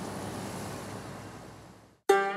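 Delivery truck driving away along a paved road, its road noise fading out steadily over about two seconds.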